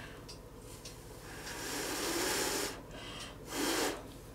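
A person breathing out audibly close to the microphone: a long soft exhale about a second and a half in and a shorter one near the end.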